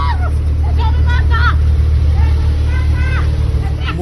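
A loud, steady low rumble from a vehicle running close by, with a woman's high-pitched shouts on and off: at the start, about a second in, and again near three seconds.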